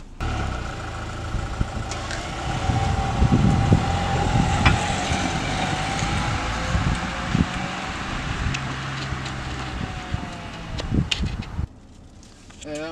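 Car running along a street, heard from outside the car, with an irregular low rumble on the microphone and a few sharp clicks. The sound cuts in suddenly and cuts off shortly before the end.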